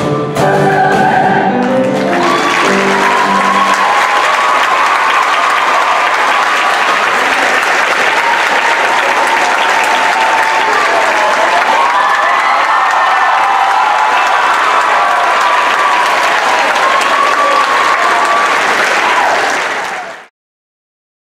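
A choir and band end on a held final chord, and about two seconds in the audience breaks into applause with cheering voices, which goes on until the sound cuts off suddenly.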